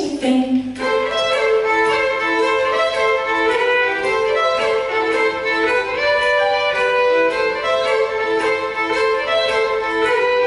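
Solo fiddle playing a Northumbrian folk tune in a run of short bowed notes, taking over as a woman's sung line ends within the first second.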